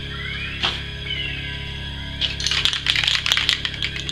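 Background music, over which an aerosol spray-paint can is shaken: a dense rapid clatter of its mixing ball lasting about a second and a half in the second half, after a single click near the start.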